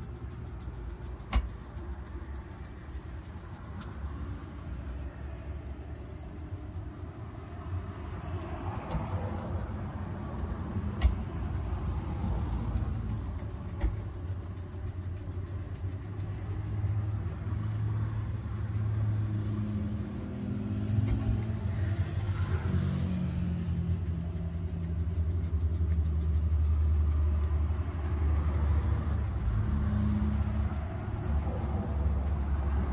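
Low rumble of road traffic, with a vehicle engine growing louder through the second half. Over it come the quick scratching strokes of a bristle shoe brush on leather shoes, and a few sharp knocks, the loudest about eleven seconds in.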